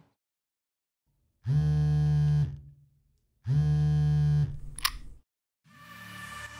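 Music sting: two identical low synthesized notes, each held about a second and about two seconds apart, followed by a brief high swish. Music begins to fade in at the very end.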